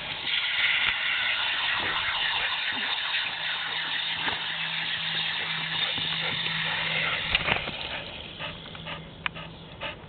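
Water running through a garden hose with a steady hiss. A low steady hum joins partway through, then the flow is shut off at the spigot about seven to eight seconds in, leaving a few small clicks.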